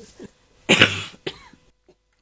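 A woman coughing: one hard cough about two-thirds of a second in, then a shorter second one. It is a lingering cough from a throat and sinus infection.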